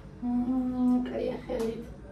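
A woman humming: one held note for most of a second, then a short, wavering run of notes.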